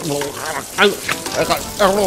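Water spraying with a steady hiss from a kitchen tap that has burst loose while being tightened, broken past saving, with a man's short cries over it.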